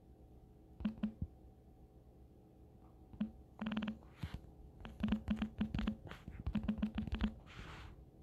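Runs of light clicks and taps, several a second in quick clusters, with a short soft rustle near the end.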